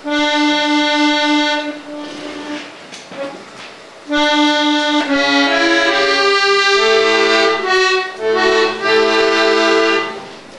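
Free-bass accordion playing the opening of an orchestral score. One note is held and fades, then after a short gap the same note sounds again, and from about five seconds in a moving melody runs over held lower bass notes.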